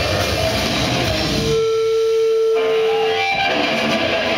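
A death metal band playing live, heard through the audience's camera microphone, with distorted electric guitars, bass and drums. About a second and a half in, the drums and low end drop out and a single held note rings on alone for about two seconds. Then the full band comes back in.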